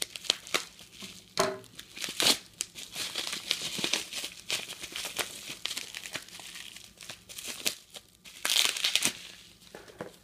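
Plastic bubble wrap being pulled off and handled, crinkling and crackling irregularly with small clicks. A louder rustling burst comes near the end.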